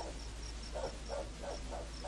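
Night ambience from a film soundtrack: a cricket chirping faintly and evenly about five times a second, with soft, irregular low calls underneath.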